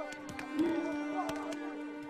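Film score of held, sustained string notes, with several sharp knocks scattered through it.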